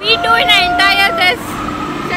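A woman's voice talking excitedly close up, with a steady electronic tone running under it for the first second or so.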